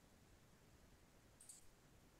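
Near silence: room tone, with one brief, faint, high-pitched click about one and a half seconds in, from someone working at a computer.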